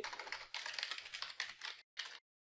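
Typing on a computer keyboard: a quick run of key clicks that cuts off suddenly near the end.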